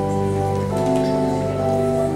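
Slow instrumental music of held, sustained chords, the chord changing about two-thirds of a second in.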